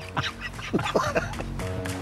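A man laughing heartily in short bursts, over a background music bed whose held chord comes through near the end.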